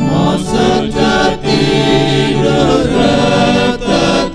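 A choir of men singing a hymn in a church service, accompanied by an electronic organ. The voices come in at the start, with a brief break between phrases near the end.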